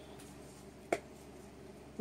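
Quiet room tone with one sharp click about halfway through, as a plastic seasoning shaker is handled.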